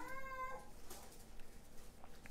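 Quiet room tone, opening with a brief faint steady pitched tone lasting about half a second.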